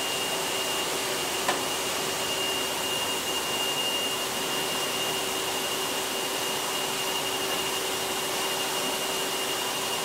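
Steady running noise of a high-pressure processing machine, with a constant high whine over a lower hum and a single sharp click about one and a half seconds in.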